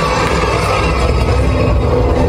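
Loud dance music with a heavy bass line and held tones in the middle.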